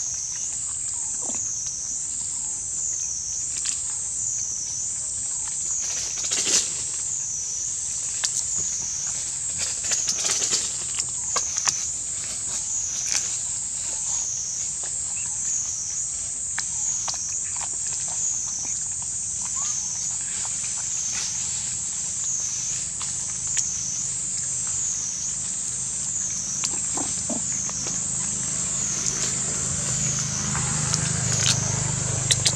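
A steady high-pitched insect chorus drones throughout, its pitch wavering up and down a little more than once a second. Over it come scattered short crunching clicks of macaques biting into watermelon rind.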